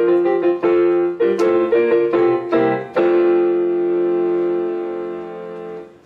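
Keyboard music: a quick run of chords, then a final chord held for about three seconds that slowly fades away.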